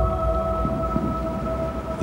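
Eerie background music: a sustained drone of several steady held tones over a low rumble.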